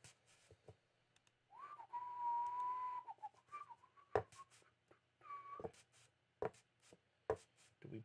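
A person whistling: one note held for about a second and a half, then two shorter notes a little higher. A few sharp clicks fall between and after the notes.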